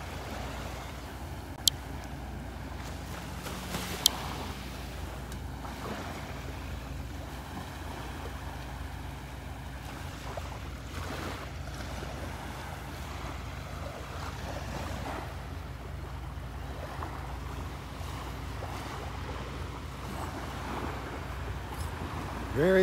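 Small waves lapping and breaking on a calm sandy shore, a steady gentle wash of surf. Two short, sharp clicks stand out, about two and four seconds in.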